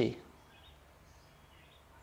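The end of a man's spoken word, then quiet room tone with a faint steady low hum.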